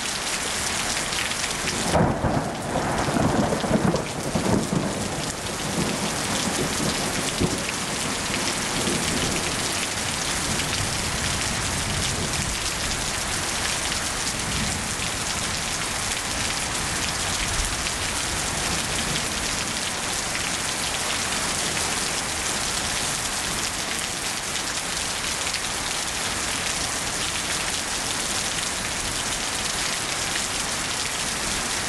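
Steady rain throughout, with a rumble of thunder starting about two seconds in and lasting a few seconds.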